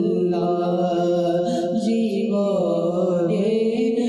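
A young man's unaccompanied voice chanting an Islamic devotional recitation, in long held notes that slide between pitches.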